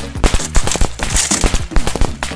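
A rapid, irregular run of sharp firecracker-like pops with bursts of hiss, an added celebration sound effect, over background music.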